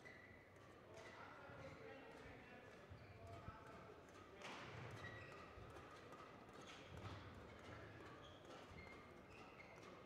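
Faint sports-hall ambience between badminton rallies: a low murmur of distant voices with a few soft knocks and thuds, the loudest about halfway through and again a little later.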